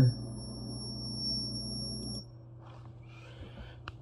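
Steady electrical buzz with a thin high-pitched whine from a high-voltage transformer and inductor circuit, heard in a recording played back through computer speakers; it cuts off about two seconds in.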